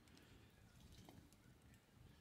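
Near silence: faint background ambience with a few faint clicks.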